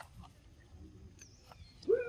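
Mostly quiet with a few faint clicks, then near the end a baby macaque starts a loud wavering call whose pitch bends up and down.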